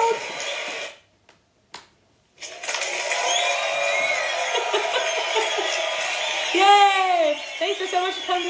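Voices and a laugh, a second of near silence with a single click, then a canned crowd cheering and applause sound effect starting abruptly and running at a steady level, with a voice gliding up and down near the end.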